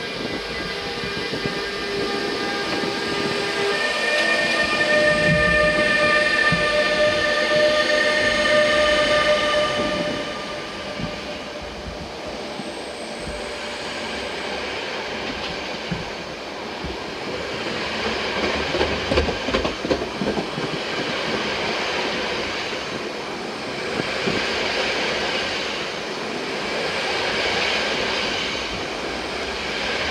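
NMBS class 28 (Bombardier TRAXX) electric locomotive pulling away, with the steady electric whine of its traction equipment as several held tones over the first ten seconds. After that come the rumble of the carriages rolling past and wheel clicks over the rail joints, swelling and fading.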